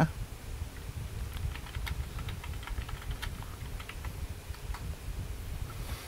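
Typing on a computer keyboard: a quick, irregular run of key clicks over a low steady rumble.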